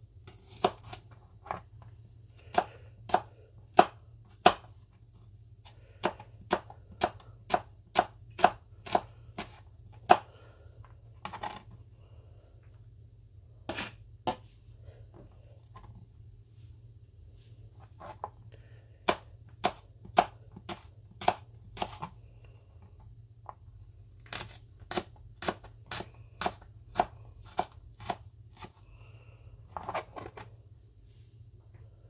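Kitchen knife chopping a garlic clove on a thin plastic chopping mat: sharp knocks of the blade on the board, about two a second, in several runs with short pauses between them.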